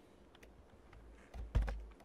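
A few keystrokes on a computer keyboard, typing the closing quote of a string. The loudest comes about one and a half seconds in, with a low thump.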